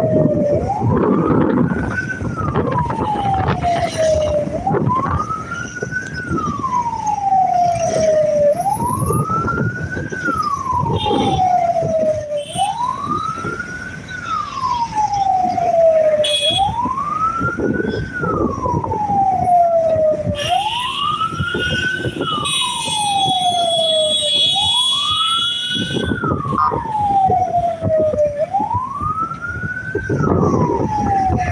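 Wailing vehicle siren, each cycle rising quickly and falling more slowly, repeating about every four seconds, over a steady low rumble of road traffic and motorcycle engines.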